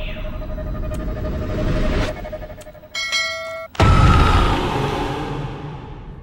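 Horror-film sound design: a held eerie tone swells for about two seconds, then a brief harsh, glitchy tonal sting. About four seconds in comes a sudden deep boom, the loudest thing here, which dies away slowly.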